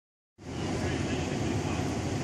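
A steady, low outdoor rumble that starts abruptly about a third of a second in and holds even.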